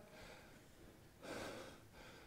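Near silence broken about a second in by one faint, short breath from a stage actor, an audible gasp of exertion.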